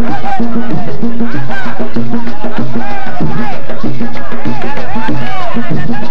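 Traditional Colombian cumbia music played live: drums keep a steady repeating beat under a melody line that bends up and down in pitch.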